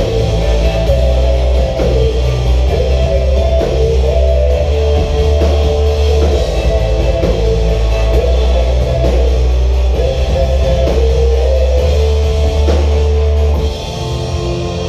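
Live rock band playing loud and steady: electric guitar, bass guitar and drum kit together, the guitar holding and sliding between sustained notes. The volume drops back a little near the end.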